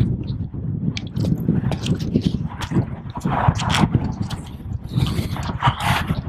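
A person biting into and chewing a crisp apple close to the microphone, with irregular crunches. Wind rumbles on the microphone throughout.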